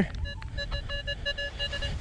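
Nokta Makro Legend metal detector's target tone: a quick string of short electronic beeps, several a second, as the coil sweeps over a target still in the sand. The signal is scratchy and broken, the sign of a small target.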